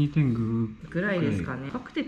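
Speech only: people talking in Japanese.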